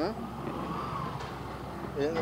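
A motor engine running faintly in the background, a low rumble with a faint whine that rises and then falls in pitch around the middle.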